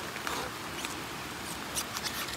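Light rain pattering: a steady hiss with a few faint scattered ticks.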